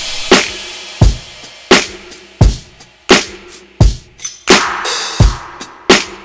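Programmed drum beat from Native Instruments Maschine playing back: kick and snare alternate, one hit about every 0.7 s, with a cymbal wash at the start and faint sustained low notes underneath. The drums are left mostly unquantized for a loose, human feel.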